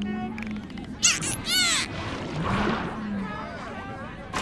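Animated film soundtrack: background music with short wordless vocal sounds and a couple of quick rising and falling glides about a second in.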